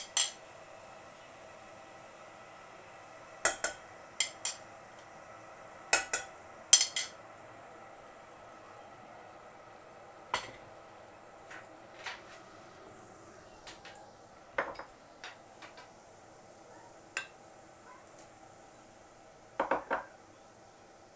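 Metal spoons clinking and tapping against a ceramic plate and the rim of a stainless steel pot as spices are knocked into the water: several sharp clinks in the first seven seconds, then fainter scattered taps and a quick cluster of knocks near the end, over a low steady background of the pot of water bubbling.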